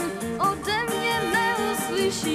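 Live music: an acoustic guitar and a big band's held chords under a melody line that glides and wavers with vibrato.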